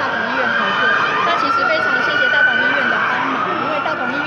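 An emergency vehicle's siren wailing, with one slow rise in pitch about a second in, held, then falling again near the end, over background crowd chatter.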